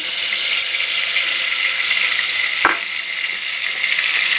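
Chopped spice masala of cumin, chillies, garlic and coconut sizzling in hot oil in a pot as it is added, a steady high hiss. One sharp click a little over two and a half seconds in.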